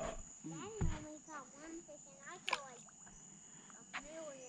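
Quiet, indistinct talking with a steady high-pitched insect drone behind it, and one sharp click about two and a half seconds in.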